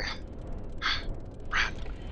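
A person's voice giving two short, breathy pants, about half a second apart, out of breath.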